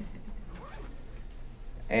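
Quiet room tone in a pause of a talk, with a steady low electrical hum and a few faint small noises; a man starts speaking near the end.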